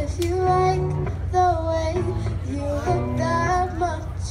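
A boy singing a slow pop song into a microphone over an instrumental backing track, amplified through a stage speaker.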